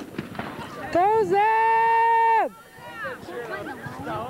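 A person's loud drawn-out shout, held on one high pitch for about a second and a half before falling off, amid chatter from onlookers.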